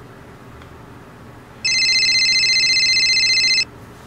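A mobile phone ringing: a loud electronic ring tone with a fast warble, starting a little before the middle and lasting about two seconds.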